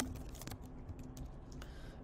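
Typing on a computer keyboard: a run of faint, irregular key clicks as code is entered.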